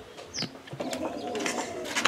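Bird calls: a short rising high chirp about half a second in, then a low, steady call from about a second in.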